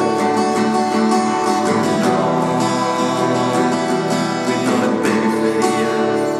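Steel-string dreadnought acoustic guitar strummed in a steady rhythm, chords ringing on.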